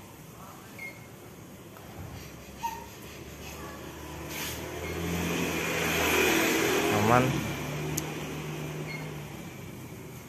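A motor vehicle passing by. It grows louder over a few seconds, peaks about two-thirds of the way in, then fades, and its engine note drops slightly in pitch as it goes past.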